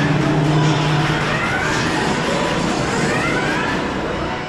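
Roller coaster train pulling out of the station along its drive track, with a rising whine that repeats a few times as it gathers speed, over station background music.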